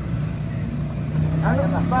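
An engine running steadily with a low, even hum throughout, with a man's voice breaking in about one and a half seconds in.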